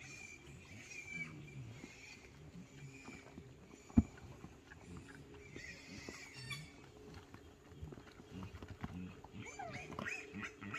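Pigs grunting softly and irregularly, with thin high calls over them in the first half and again past the middle. A single sharp thump about four seconds in is the loudest sound.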